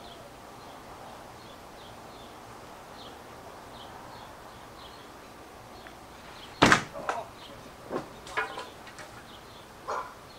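A hard-thrown stone-tipped spear striking with one loud, sharp knock about two-thirds of the way in, followed at once by a second knock and a few smaller knocks. The point glances off the target and sticks in a wooden throwing target, breaking off.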